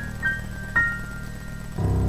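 Yamaha digital piano playing a slow jazz intro: two high notes ringing out one after the other, then a low, full chord struck near the end.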